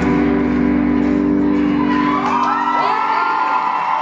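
A rock band's last chord on electric guitars and bass is held and rings out, fading away by about three seconds in. About two seconds in, the audience starts whooping and cheering.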